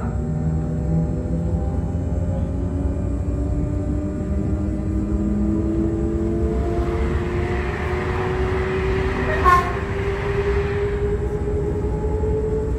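Interior running noise of a Z 20500 electric commuter train: a steady rumble of wheels on the track with a motor whine slowly rising in pitch as the train gathers speed. A rushing hiss swells through the middle, with a short sharp click about nine and a half seconds in.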